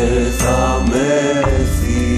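Greek rock song playing: a melodic line that moves from note to note over a steady bass and drum beat, with no words sung.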